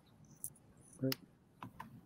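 A few soft, scattered computer keyboard key clicks over a quiet call line, with one short spoken word about a second in.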